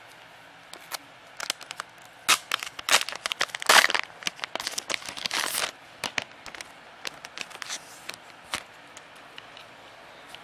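Clear plastic sleeve and card album packaging crinkling and crackling as they are handled. The crackles are busiest in the middle and thin to a few scattered clicks near the end.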